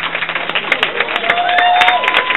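Audience applauding with scattered whoops and cheers, including a drawn-out cheer near the end.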